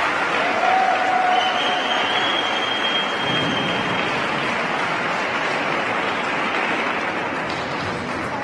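Audience applauding, slowly dying away, with a brief high whistle in the first half.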